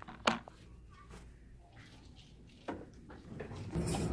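A few sharp clicks and a knock in a quiet small room, with faint handling noise. Near the end a steady low hum starts.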